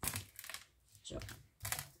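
A few sharp clicks of a small piece of paper being cut off, one right at the start and another near the end.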